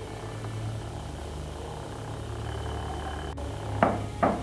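Steady low electrical hum with faint hiss, typical of a video copied from one old video recorder to another. A single click comes late on, and a short sharp sound follows just before the end.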